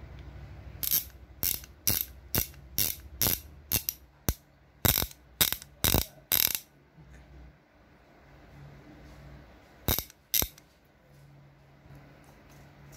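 TOP 17/19 mm ratchet wrench clicking as its ratchet head is worked by hand: a run of about a dozen sharp clicks, roughly two a second, then a pause and two more clicks near the end.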